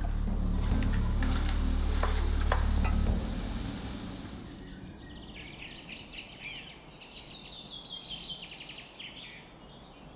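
Lobster shells sizzling as they fry in a steel pot, stirred with a wooden spoon, with a couple of sharp clicks from the spoon, under a low hum that dies away about three seconds in. The frying stops about five seconds in, and birds sing in quick series of high chirps after that.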